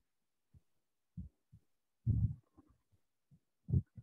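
A series of short, irregular low, muffled thumps, the loudest about two seconds in and another near the end.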